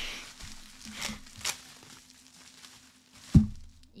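Bubble wrap crinkling as it is handled and peeled from around a plastic drinks bottle, softer after the first second or so. A single dull thump near the end is the loudest sound.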